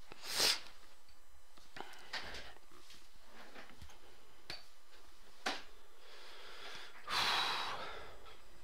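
Sniffing breaths through a congested nose from a head cold: a sharp sniff near the start, a few fainter ones, and a longer, louder one near the end.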